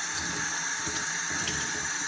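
Water running steadily from a bathroom faucet and splashing onto a wet cloth held in a hand over the sink.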